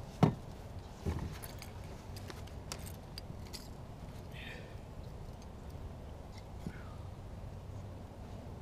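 Hands handling a landing net and a lure in a kayak: a sharp knock just after the start and a duller thump about a second in, then scattered small clicks and clinks, over a low steady rumble.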